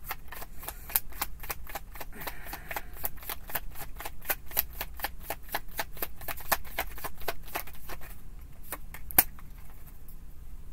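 A tarot deck being shuffled by hand: a fast run of crisp card clicks, about five a second, pausing briefly near the end, then a few more, with one sharp, louder snap.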